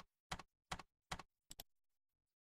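Five short, sharp taps in an even row, about two and a half a second, with dead silence between them.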